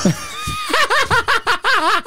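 Several men laughing hard, with one voice breaking into a quick, rhythmic run of 'ha-ha-ha' from about a second in.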